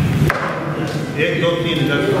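Indistinct voices talking in a large hall, with one sharp knock about a third of a second in.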